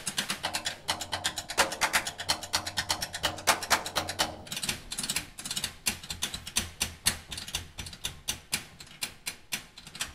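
Drum kit solo break: fast, dense run of stick strokes on the snare and toms, with no other instruments playing.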